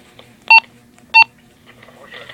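Motorola HT1250 handheld radio's keypad tones: two short, identical electronic beeps about two-thirds of a second apart as its front buttons are pressed to change zone.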